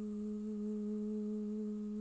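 A woman humming one steady, low note, held without any change in pitch.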